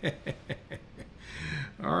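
A man chuckling quietly: a quick run of short, breathy laughs, then his voice starting to speak near the end.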